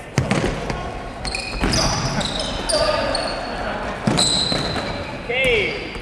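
A futsal ball being kicked and bouncing on a wooden sports-hall floor, three sharp thuds echoing in the hall, with indoor shoes squeaking on the boards. A player gives a short shout near the end.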